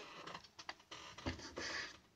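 Faint scrubbing of a folded sponge on roughly sanded wood as water-based stain is wiped on, with a few light ticks and one longer rasping rub near the end.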